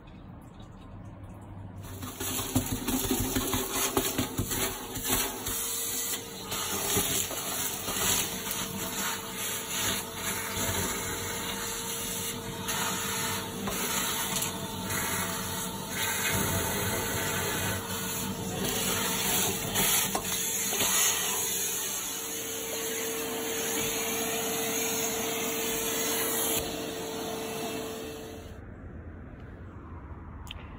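Wet vac running in a narrowboat's engine bilge, its hose sucking up the last water and sediment from the bilge floor: a steady motor whine under a rough rush of air and water. It starts about two seconds in and shuts off near the end.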